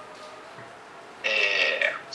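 A short vocal sound from a person, lasting just over half a second and starting a little past the middle, after a quiet stretch of room tone.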